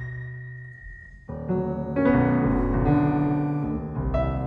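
Grand piano chords ringing and decaying, layered with steady, computer-generated sine tones. A chord fades over the first second under a held high tone, then new chords enter about a second and a half in and more strongly at two seconds.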